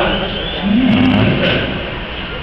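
A man's voice holding one drawn-out syllable for about a second, a hesitation sound between phrases, over a steady background hiss.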